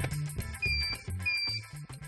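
Background music: a bass line and drums with a steady beat, with two short high held notes in the middle.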